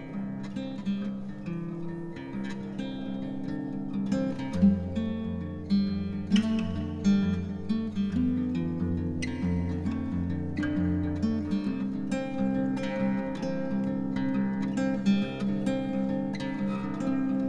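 Instrumental indie-folk music: fingerpicked acoustic guitar notes ringing over one another. A low sustained tone comes in about four and a half seconds in and drops out around eleven and a half seconds.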